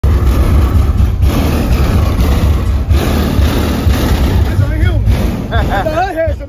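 Car audio system bumping music at high volume, with heavy bass throughout; a voice rises over it near the end.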